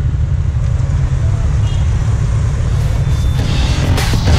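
Steady low rumble of traffic on a main road, cars and scooters passing. Background music comes in near the end.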